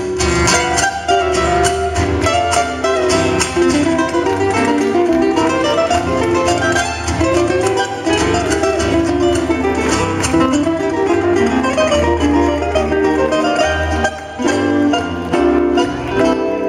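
Four acoustic guitars playing the instrumental opening of a cueca together, strummed and plucked in a brisk rhythm, with a brief drop near the end.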